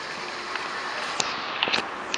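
Steady background hiss with a few faint clicks of a handheld camera being moved about, a little past a second in and again near the end.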